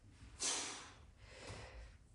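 A man's hard exhale of exertion during a push-up and dumbbell kickback rep: a breathy rush about half a second in, then a fainter breath near the end.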